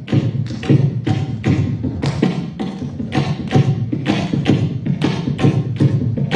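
A mridangam played in a fast, continuous run of strokes, about four to five a second. Deep low thuds mix with sharper ringing taps.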